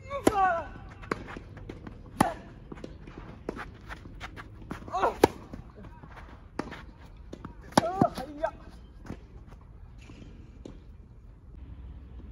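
Tennis rally opening with a serve: four sharp racket-on-ball strikes a few seconds apart, three of them with a short vocal grunt from the player hitting. Quicker footstep clicks sound between the shots.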